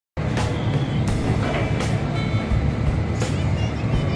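Steady low rumble of a docked multi-deck river passenger launch's machinery, with scattered knocks and music mixed over it.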